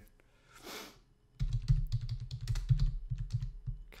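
Fast typing on a computer keyboard, a quick run of key clicks starting about a second and a half in. Before it, a short breathy hiss.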